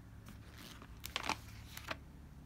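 Thin Bible-paper pages being flipped by hand, rustling and crinkling. There is a cluster of quick page rustles about a second in and another just before the end.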